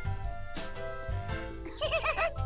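Light background music for a children's cartoon. Near the end come high, warbling, squeaky cartoon-creature voices.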